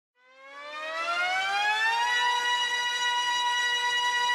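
Air-raid-style siren sound opening an electronic dance track. It fades in from silence and rises in pitch for about two seconds, then holds one steady note.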